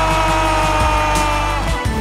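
A TV football commentator's long drawn-out goal cry, one sustained note held for about three seconds, sinking slightly and fading out near the end, for Messi's goal against Mexico.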